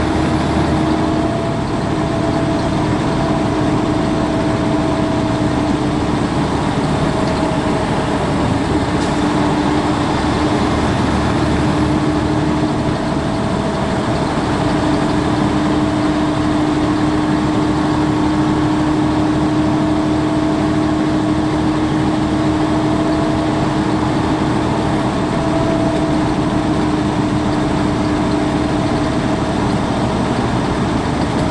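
Heavy truck cruising on a highway, heard from inside the cab: a steady engine drone and road noise with a constant hum.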